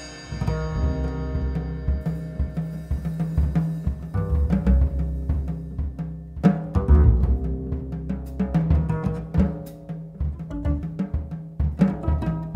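Free jazz piano trio passage led by drums played loosely on toms and bass drum in an irregular rhythm, with double bass underneath. A piano chord dies away at the start.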